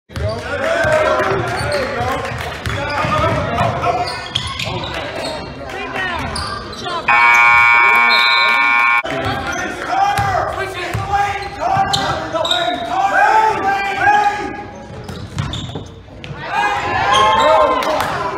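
A basketball bouncing on a hardwood gym floor, with players and spectators calling out in the echoing gym. About seven seconds in, the scoreboard horn sounds one loud steady tone for about two seconds, then cuts off.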